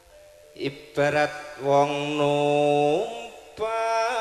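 East Javanese tayub gamelan music: a few sharp drum strokes about half a second to a second in, then a singer holds one long steady note that slides upward near its end. A second held note begins shortly before the end.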